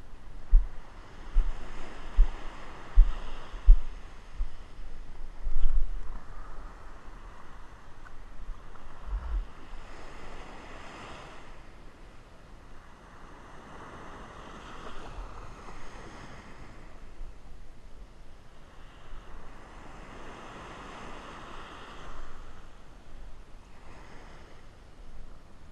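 Ocean surf breaking and washing up the beach, swelling and fading every several seconds. Low thumps of wind on the microphone during the first ten seconds or so.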